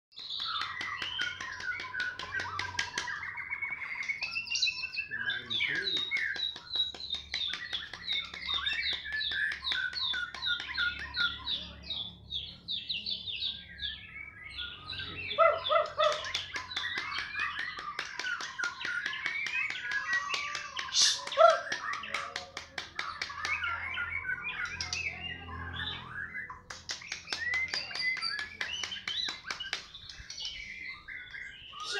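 Caged white-rumped shamas (murai batu) singing against each other in a song duel: continuous varied song of fast repeated notes and whistled phrases. It thins briefly about halfway, and one sharp loud note stands out about two-thirds of the way through.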